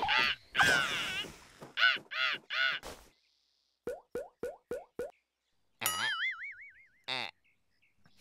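Cartoon comedy sound effects for an awkward pause: three short calls, then five quick rising blips as a row of ellipsis dots pops up one by one, then a wobbling, warbling tone near the six-second mark that ends with a short hit.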